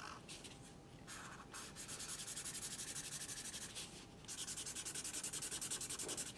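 Felt-tip Sharpie marker scribbling on paper to fill in a square solid black. A few separate strokes come first, then two runs of rapid, even back-and-forth strokes with a short pause between them.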